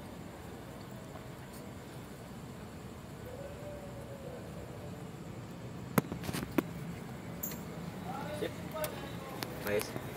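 Low, steady background with two sharp clicks about six seconds in, as hands work a new toothed rubber timing belt onto the crankshaft sprocket.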